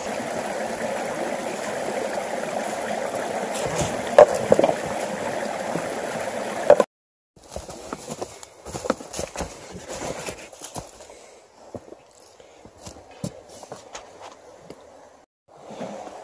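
River water rushing steadily over rocks, cutting off abruptly about seven seconds in. After the cut, quieter running water with scattered light clicks and knocks, footsteps over river stones.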